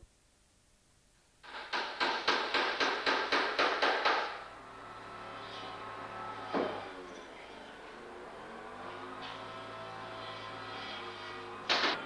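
A rapid series of about a dozen sharp knocks, roughly four a second, lasting under three seconds. They are followed by quieter handling sounds and a single knock over a low hum.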